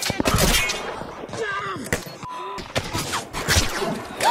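Gunfire from a film's battle soundtrack: a rapid volley of rifle shots at the start and more shots a little after halfway, mixed with shouted dialogue.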